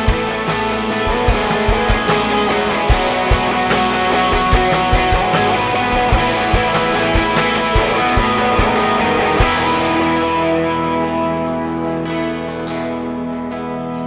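Live worship band playing an instrumental passage on acoustic guitar, bass guitar, keyboard and drums. The drum beat stops about two-thirds of the way through, leaving held keyboard and guitar chords that grow quieter near the end.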